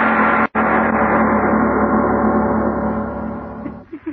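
A loud, sustained dramatic music sting: one held chord that is cut by a brief dropout about half a second in, then fades out near the end.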